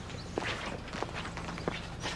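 Footsteps on a hard floor: a few irregular steps.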